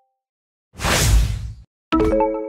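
A whoosh sound effect for a quiz screen transition, lasting about a second with a heavy low end. Near the end a struck mallet-like chime note begins.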